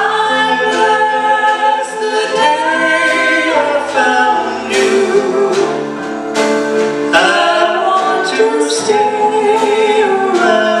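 A woman and a man singing a duet in harmony, with long held notes, over acoustic guitar accompaniment.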